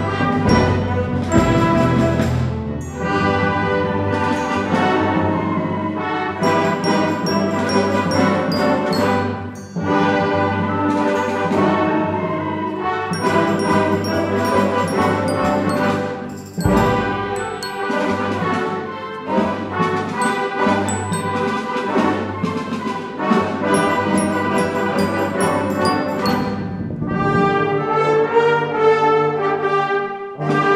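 A large symphony orchestra joined by massed young wind and brass players plays loud, brass-heavy orchestral music. Phrases are broken by a few short breaks, and it turns softer and lower near the end.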